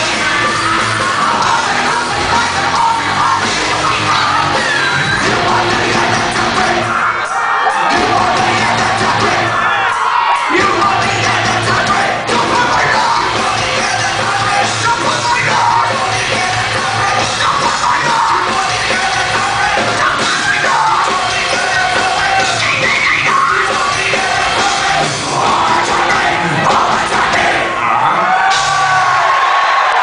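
Live band playing through a PA: sung and shouted lead vocals over electric guitar, bass and drums. The bass and drums drop out briefly twice, about a quarter and a third of the way in.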